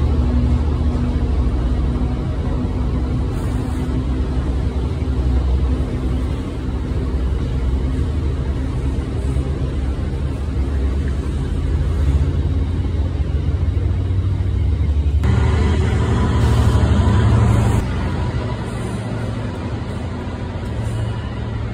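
Freight train of bogie tank wagons rolling past: a steady low rumble of wheels on rail. It grows louder and harsher for a few seconds about fifteen seconds in, then falls away as the last wagon passes near the end.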